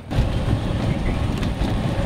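Golf cart driving along a paved path, with wind rumbling on the microphone as a steady, rough noise.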